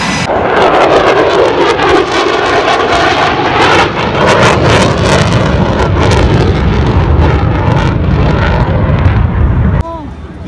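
F-35C Lightning II fighter jet flying past overhead, its afterburning turbofan making a loud rushing jet noise. The noise deepens into a heavy low rumble as it goes by, then cuts off suddenly near the end.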